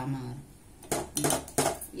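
Steel spoon clinking and scraping against a steel pot while thick ragi kali dough is being stirred, with a few sharp clinks about a second in. A voice talks over it.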